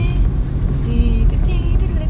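Low, steady rumble of a vehicle driving slowly over rough ground, heard from inside the cab.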